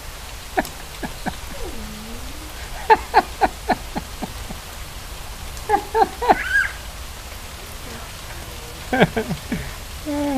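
Steady rain falling on a lawn, a constant hiss, broken by short bursts of laughter about three, six and nine seconds in.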